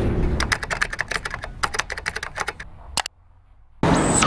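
Computer keyboard typing sound effect: a quick, irregular run of key clicks, then a final sharper click about three seconds in as the search button is pressed.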